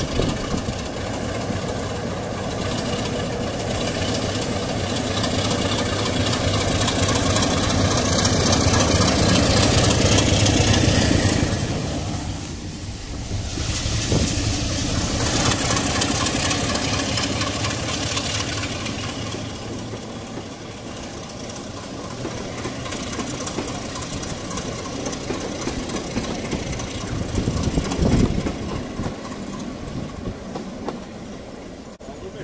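BR Class 33 diesel locomotive's eight-cylinder Sulzer engine running as the locomotive moves at the station. After a break, it works hard to pull a passenger train away, loudest as it passes close, then fading as the coaches roll away.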